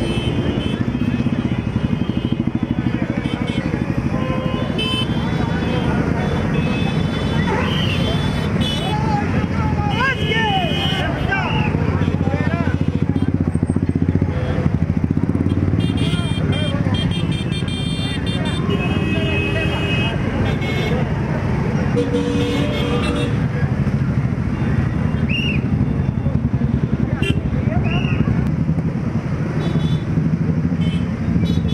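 Many motorcycle and scooter engines running together at low speed in a procession, a dense steady rumble, with people's voices calling over it.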